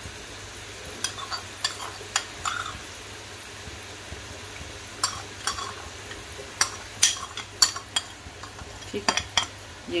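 A metal spoon clicking and tapping against a glass baking dish, in scattered light strikes and small clusters, as jelly cubes are spooned onto a custard dessert. A steady low hum runs underneath.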